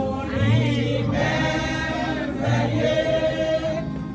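A church choir of women singing a gospel hymn together, voices holding long notes, with a deep low note sounding twice.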